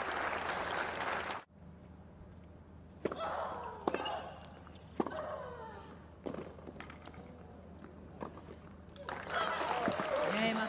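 Crowd applause in a tennis arena, cut off suddenly about a second and a half in. A rally follows: racquet strikes on the ball roughly a second apart, some with a player's grunt. Crowd applause and cheering rise again near the end as the point is won.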